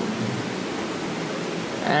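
Steady, even hiss of the recording's background noise, with no other distinct sound.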